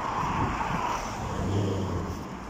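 Road traffic noise from a motor vehicle going by: a steady wash of sound with a low engine hum coming in during the second half.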